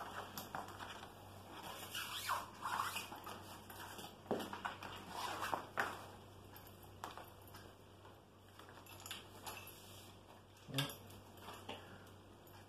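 Plastic packaging bag rustling and crinkling as it is handled, in irregular swishes with scattered light clicks and knocks, the sharpest knock a little before the end.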